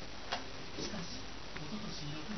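A few light, sharp clicks at irregular spacing, over low voices from a television in the room.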